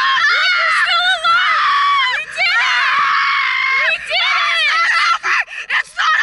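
A thrill-ride rider screaming in a series of long, high, wavering screams with brief breaks for breath, getting choppier near the end.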